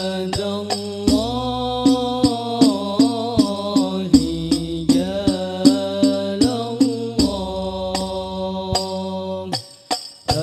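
Banjari hadrah music: male voices sing a sholawat in long, ornamented lines over hand-struck frame drums (rebana) keeping a steady beat. The music breaks off briefly near the end.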